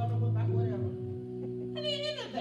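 Sustained keyboard chords held as a soft backing pad, the chord shifting about half a second in, with a short high voice sliding down in pitch near the end.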